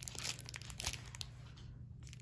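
Plastic packaging crinkling: a torn poly mailer and a small clear plastic bag rustled as a roll of washi tape is pulled out, crackling thickly for about the first second and then dying down.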